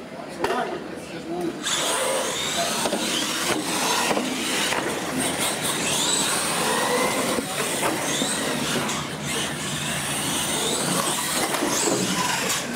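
Radio-controlled monster trucks racing: motors whining, rising and falling in pitch as they speed up and slow down, over the noise of tyres on the concrete floor, setting in about two seconds in.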